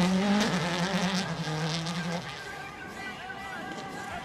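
Rally car engine running hard. Its note steps down twice and fades away over the first two seconds or so, leaving only a faint background.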